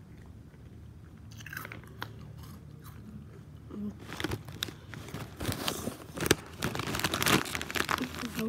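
Close-up chewing of a crunchy snack, sharp crackly crunches that start sparse and grow louder and denser from about four seconds in.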